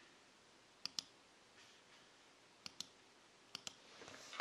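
Near silence broken by three pairs of short clicks, the two clicks of each pair about a tenth of a second apart.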